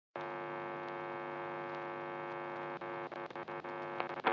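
A quiet, steady, buzzy tone with many overtones opening a vocaloid rock track. About three seconds in it breaks into rapid stuttering cuts, just before the band comes in.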